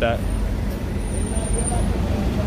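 Street traffic at a city intersection: passing cars and a bus running, a steady low rumble of engines and tyres, with a faint high whine for about a second in the middle.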